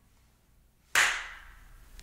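A single sharp hand clap about a second in, fading over about half a second.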